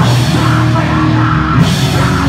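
Loud live hardcore band playing sustained guitar and bass chords over a drum kit, with a cymbal crash about one and a half seconds in.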